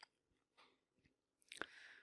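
Near silence, broken by a faint click at the start and a few more faint clicks about one and a half seconds in.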